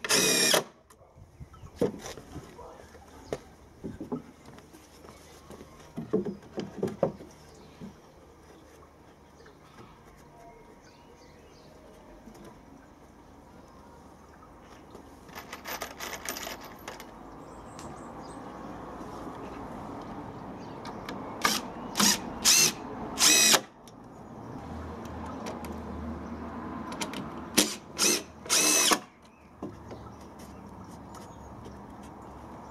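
Cordless drill driving screws into decking boards in short bursts, each with a rising motor whine. Four come close together about two thirds of the way in and three more near the end, with light knocks of wood and handling between them.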